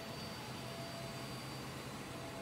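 Steady room noise of a laundromat: an even rushing hiss of air and machinery with a low hum and a faint high, steady whine underneath.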